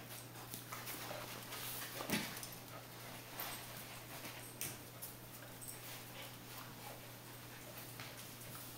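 Two small dogs scuffling with a toy in a wire dog crate: scattered light clicks and rustles, with a soft thump about two seconds in.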